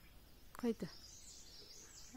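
Faint, high chirping of small birds over quiet outdoor background noise, with one short voiced call about half a second in.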